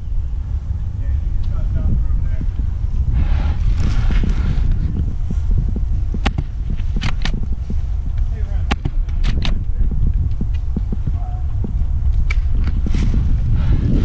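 Wind buffeting an outdoor action-camera microphone as a steady low rumble. A scattering of sharp clicks comes in about halfway through and again near the end.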